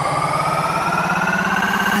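Electronic dance music build-up: a synthesizer riser, one tone with several overtones gliding slowly upward in pitch over a fast-pulsing bass.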